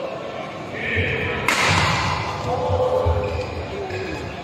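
Badminton doubles rally: rackets striking the shuttlecock and players' shoes thudding and landing on the court floor, with voices in the hall.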